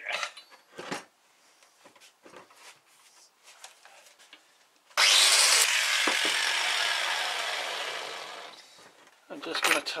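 Handling knocks at the workbench, then about five seconds in a power drill with a small abrasive bit grinds against steel: a sudden loud, harsh noise that fades out over the next three seconds.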